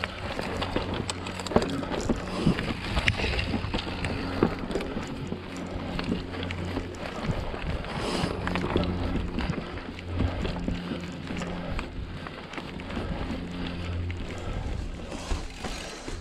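Mountain bike ridden down a rocky, rooty singletrack: tyres, chain and frame rattle and knock over rocks and roots. A low buzzing hum comes and goes, typical of the rear freehub ratcheting while coasting.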